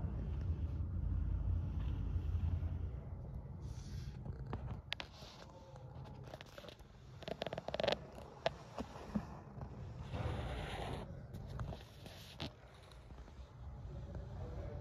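Handling noise from a handheld camera moving over a countertop: a low rumble for the first few seconds, then scattered clicks and light scraping and rustling.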